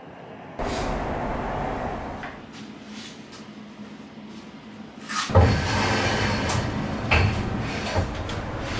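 A wooden board carrying unfired clay tea bowls being handled and lifted onto an overhead rack of metal poles, with a loud knock about five seconds in and another about two seconds later, over a steady room noise.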